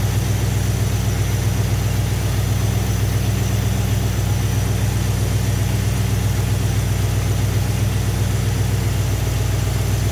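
Chrysler V8 with a Carter Thermoquad four-barrel carburetor idling steadily while its idle mixture screws are turned back in from the maximum-vacuum point, leaning the mixture until the idle just begins to change.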